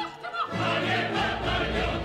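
Opera chorus singing with orchestra; after a few scattered voices, the full chorus and orchestra come in together about half a second in.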